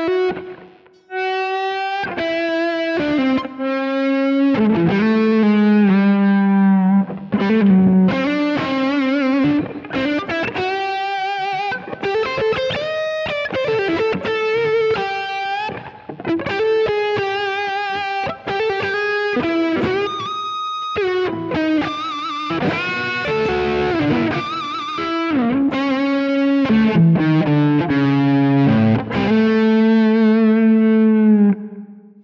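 PRS DGT SE electric guitar on its neck humbucker, played through a Kemper Marshall amp profile with reverb and delay, running single-note lead lines with string bends and vibrato. The tone is thick and warm, with notes ringing on into the echoes.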